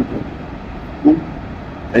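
Steady, even rushing of a waterfall, with no engine tone in it.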